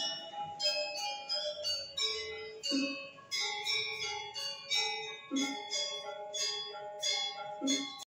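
Balinese gamelan music: metal keys and gongs struck in quick interlocking notes that ring on, with a lower stroke about every two and a half seconds. It stops at the end.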